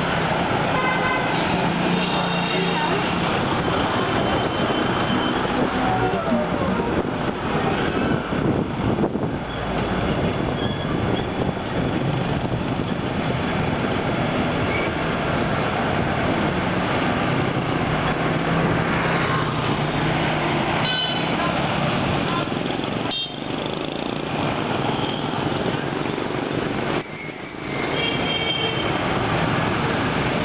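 Busy street traffic of motor scooters and motorbikes under a steady rush of noise, with short horn toots scattered through it, a few around two seconds in and others near the end.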